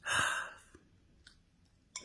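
A man sighs once into a phone microphone, a breathy exhale of about half a second, with a short click near the end.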